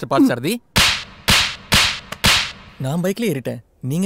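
Four sharp cracks with short hissing tails, about half a second apart, like whip cracks, between snatches of men's speech.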